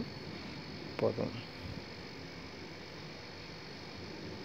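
Quiet background with a steady, faint, high-pitched tone and hiss throughout, and a brief spoken syllable about a second in.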